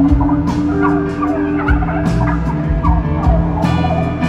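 Rapid, warbling turkey gobbles in short falling calls, imitating a tom turkey, over a live country band's instrumental passage with a held note and bass underneath.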